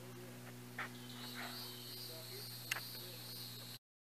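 Faint outdoor ambience on a wooden boardwalk: a steady high buzz over a low steady hum, with a few light taps of footsteps on the boards. It cuts off abruptly near the end.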